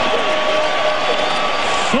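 Arena crowd cheering and applauding a home-team basket, a steady wash of noise. One long held tone rides over it and stops near the end.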